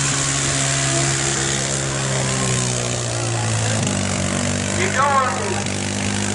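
ATV engine held at high revs while churning through a mud pit. Its pitch sags slowly, then drops abruptly about four seconds in. A voice shouts near the end.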